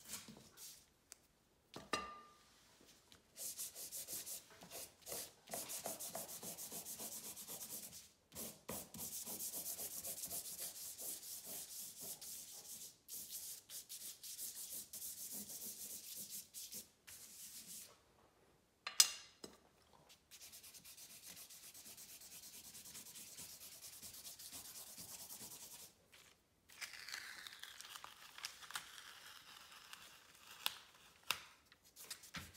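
Rapid scribbling strokes of charcoal on paper, in long runs of fast scratching broken by short pauses, with one sharp tap about two-thirds through. Near the end, masking tape is peeled off the paper, a rasp that rises and falls in pitch.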